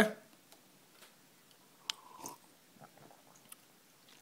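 Faint sip of coffee from a mug: a short slurp about halfway through, with small mouth clicks.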